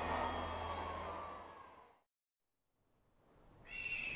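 A soundtrack drone of sustained, steady tones fades out to complete silence about halfway through. Near the end a new sound fades in, with a high, slightly falling whistle-like tone.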